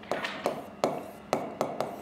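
Pen tapping on the glass of an interactive touchscreen board during handwriting: a series of sharp, irregular taps, about seven in two seconds.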